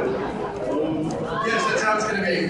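Indistinct chatter from a crowd in a large hall, with a voice speaking over it in the second half.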